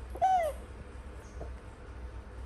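A baby macaque gives a single short, high-pitched coo that rises a little and then falls, about a quarter of a second in.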